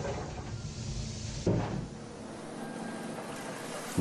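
A CNC machine tool's sliding enclosure door runs along its track for about a second and a half and shuts with a single sharp clunk. A quieter steady machine hum follows.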